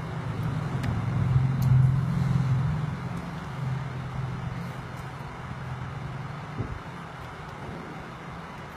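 A low, steady rumbling hum that swells over the first two seconds and then slowly fades, with one short knock near the end.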